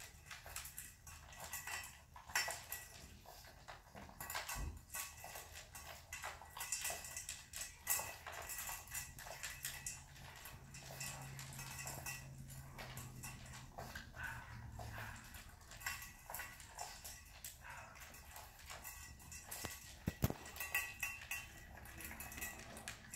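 French bulldog eating fast from a stainless steel bowl: a dense run of irregular clicks and clinks of its mouth and food against the metal bowl.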